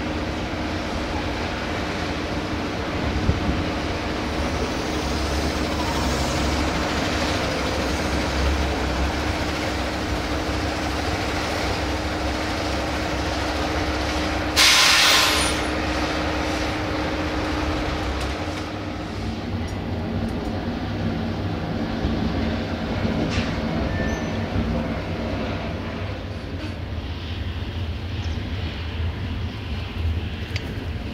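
Diesel engine of a truck-mounted crane running steadily, with a loud, sharp hiss of compressed air for about a second midway: air brakes being released or applied.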